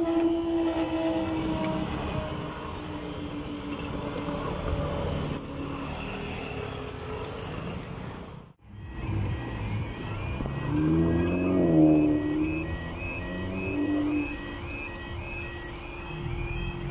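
Level crossing alarm sounding a repeating high warbling tone, about two pulses a second, as the barriers begin to lower, over road traffic and an engine briefly revving up and dropping back. Before an abrupt cut, a steady low hum from the electric train at the crossing.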